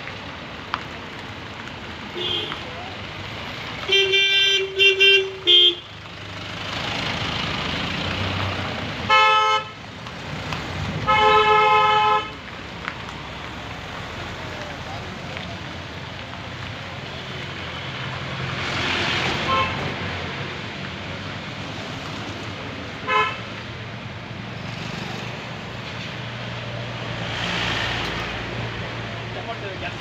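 Vehicle horns honking in a stalled traffic queue over steady engine and road noise: a short toot about two seconds in, a run of quick honks from about four to six seconds, longer blasts around nine and eleven seconds, and one more short toot near the end of the first half. The horns differ in pitch, so several vehicles are sounding them.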